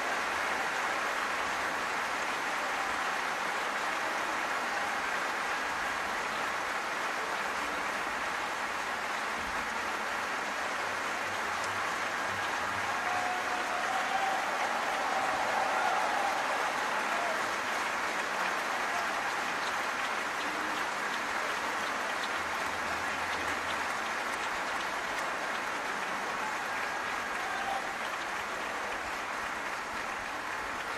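Large audience applauding steadily for a finished operatic aria, swelling a little about halfway through.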